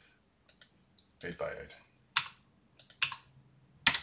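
A handful of separate keystrokes on a computer keyboard, typing in numbers.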